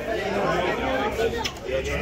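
Overlapping chatter of several men talking at once, with one sharp click about one and a half seconds in.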